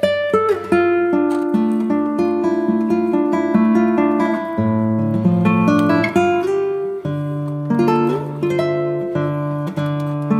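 Background music: acoustic guitar playing a melody of plucked notes over sustained chords.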